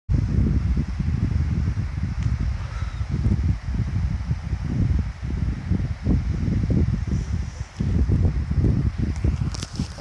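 Wind buffeting the phone's microphone: a loud, irregular low rumble that rises and falls. A few sharp clicks of the phone being handled come near the end.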